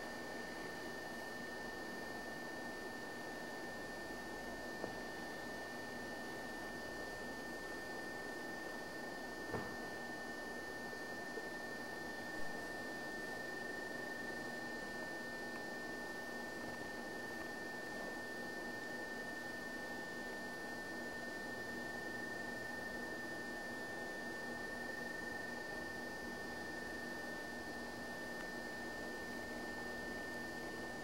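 Quiet room tone: a steady hiss with a thin, constant high-pitched tone, and a few faint knocks in the first half.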